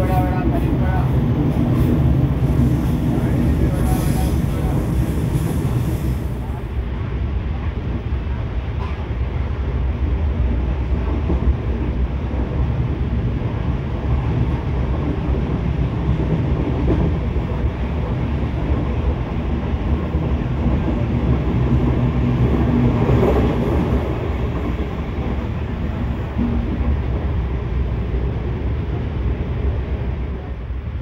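Steady running noise of a passenger express train at speed, heard from inside a coach at its doorway: a continuous low rumble of wheels on the rails.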